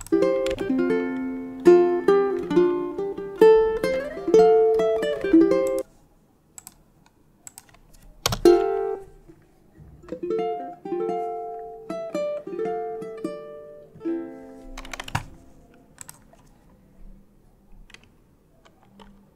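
Fingerpicked ukulele phrases heard in short stretches with pauses between them, including a couple of single strummed chords. A few faint computer-keyboard clicks come near the end.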